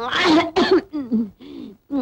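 A woman's voice making a few short vocal sounds in quick succession, more like throat-clearing noises than words.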